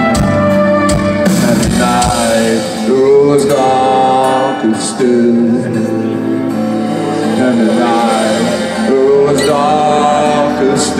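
Metalcore band playing live through a large outdoor PA, heard loud from inside the crowd: sustained guitar chords under a sung melody. The deepest bass thins out a few seconds in, then comes back near the end.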